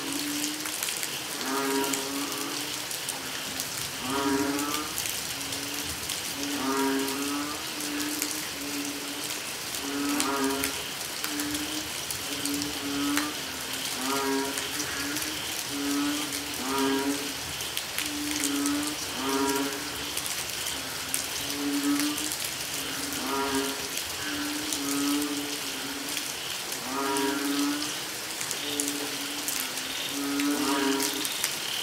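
A chorus of banded bullfrogs (Asian painted frogs) calling in the rain: short, low, mooing calls repeat about once a second, several frogs overlapping, over the steady hiss of rainfall.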